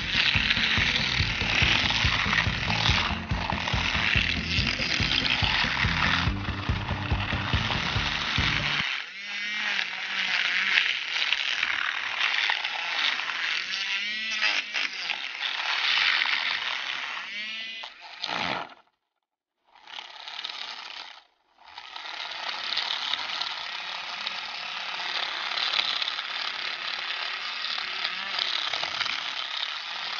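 Battery-powered Aerolatte handheld milk frother whirring in a glass bowl, its wire whisk spinning through and spattering a coffee and sugar mix being whipped into dalgona foam. A low rattle runs under it for about the first third, and the sound drops out twice briefly about two-thirds through.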